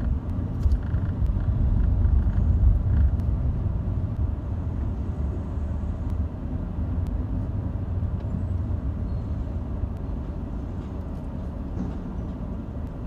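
Low steady rumble of a car driving slowly in city traffic, heard from inside the cabin. It is a little louder for the first few seconds, then eases slightly.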